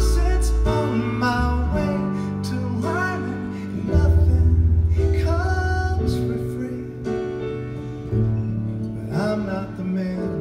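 Live acoustic performance of a slow song: grand piano with deep held bass notes and a mandolin, under a sung vocal melody.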